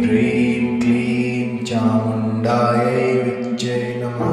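A voice chanting a Kali mantra in repeated syllables over a sustained low drone and background music.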